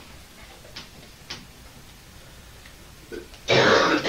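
Chalk on a blackboard: two light taps about a second in, then near the end a loud, rough burst of noise about half a second long, broken once.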